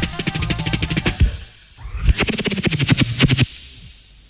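Reggae record starting up: two quick volleys of sharp, rapid percussive hits with a short break between them, then the sound drops low near the end.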